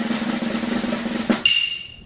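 Snare drum roll sound effect, swelling louder and ending about a second and a half in with a sharp hit and a bright ringing chime that fades away.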